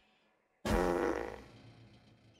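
A short, low, fart-like sputter from a tipped-over cartoon tractor. It starts suddenly just over half a second in and fades away over about a second.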